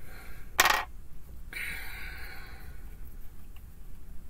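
Tarot cards being gathered up and handled on a cloth-covered table: a short, sharp rustle about half a second in, then a longer soft sliding hiss that fades out.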